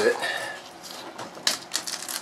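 Brittle old lining residue and adhesive being picked and scraped by hand off the inside of a fiberglass hull: light crackling, then a quick run of sharp clicks about a second and a half in.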